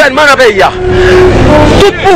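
A man speaking loudly outdoors for about half a second, then about a second of loud street noise carrying a steady droning tone, before his voice comes back near the end.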